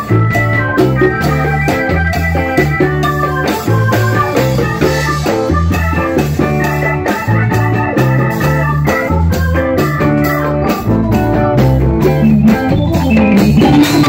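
Live Latin rock band playing: electric guitar and organ-toned keyboard over a repeating bass line, with congas, guiro and drum kit keeping a steady rhythm.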